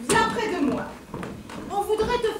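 Speech: actors' voices on stage, short spoken phrases with a brief lull about a second in.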